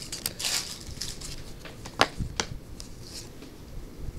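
Stiff baseball cards being slid off a stack and flipped by hand: a papery rustling with a few sharp clicks, twice near the start and twice around the middle.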